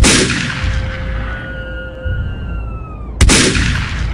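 Two pistol shots about three seconds apart, the first followed by a high ringing that slowly falls in pitch, over background music with a steady low beat.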